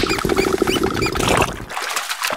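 Cartoon sound effects of a toy duck in bathwater: water sloshing and trickling under a quick run of short, high, rising squeaks, which thin out about three-quarters of the way through.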